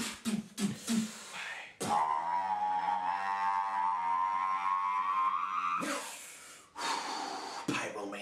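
Solo beatboxing: a few quick percussive mouth sounds, then one long held buzzing vocal tone lasting about four seconds, ending in hissy breath-like snare sounds near the end.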